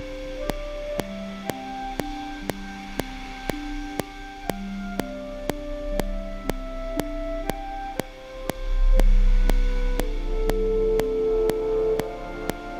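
Sampled orchestral mock-up playing back from the laptop: a slow line of held notes over a low trombone portato part, with a metronome click ticking about twice a second. A low rumble swells briefly about nine seconds in.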